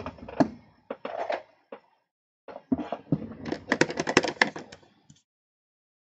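Light clicks and taps of desk handling at a plastic ink-pad case, with a foam dauber dabbing on the ink pad, in short irregular bursts that stop about five seconds in.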